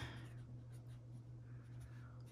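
Felt-tip marker writing on paper: faint, uneven strokes of the tip rubbing across the sheet, over a faint low steady hum.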